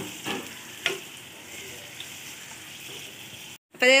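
Hot oil sizzling in a frying pan, with two light clicks in the first second. The sound cuts off briefly just before the end.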